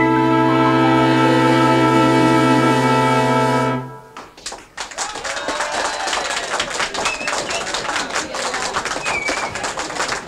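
An orchestra holds the song's final chord, which cuts off about four seconds in. It is followed by clapping and voices from an audience.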